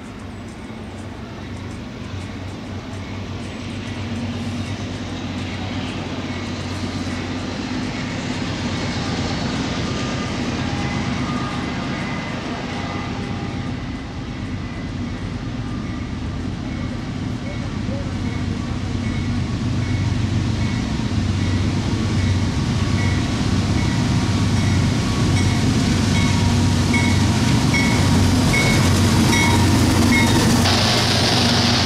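Diesel freight locomotives approaching and passing: a low, steady engine drone with rumbling rail noise that grows steadily louder as the train draws near.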